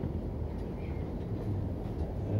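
Steady low rumble and hum inside a Siemens ULF A1 low-floor tram standing still, with a faint low tone joining in about halfway through.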